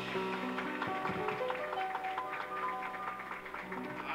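Live jazz from a piano, bass and drums trio, the piano playing a quick succession of short notes.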